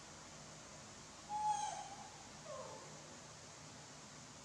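A young macaque calling twice with plaintive coos: a louder, held one about a second in, then a shorter one that falls in pitch.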